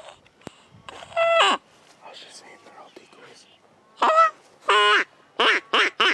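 Quacking from a duck call: one long call that falls in pitch about a second in, then a run of five short, loud quacks in the second half.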